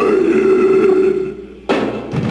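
Death metal vocalist's low guttural growl through the PA, held for about a second and a half and trailing off. The band crashes in near the end with a hit of drums and guitars.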